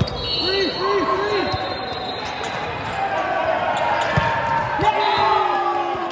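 Indoor volleyball rally on a hardwood gym court: sneakers squeaking on the floor, the ball struck with a sharp smack about four seconds in, and players shouting, with the sounds echoing around the hall.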